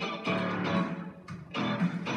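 Instrumental backing music of a children's pop-rap song, with no singing: a plucked guitar and bass line.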